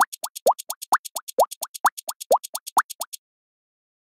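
Bubble-popping sound effect: a rapid, even string of short plops, each a quick rising blip with a sharp click, about five or six a second. It cuts off about three seconds in.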